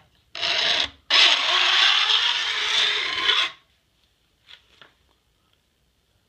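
Single-cut mill bastard file scraping along the tops of a hand saw's steel teeth, jointing them level so none stand proud: a short stroke, then one long stroke of about two and a half seconds. Two faint ticks follow.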